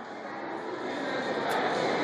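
Steady background hubbub of a large tiled room, slowly growing a little louder, with a single sharp click about a second and a half in.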